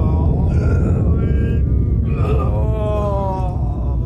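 A man giving long, wordless moaning cries, two drawn-out wails that bend in pitch, over a steady low rumble.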